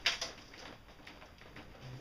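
A sharp knock with a few smaller clicks on the boat's plywood edge, followed by faint rubbing as a hand slides along the rim.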